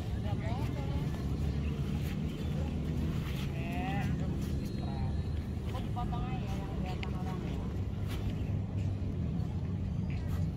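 Outdoor ambience: a steady low rumble with faint, distant voices rising and falling now and then.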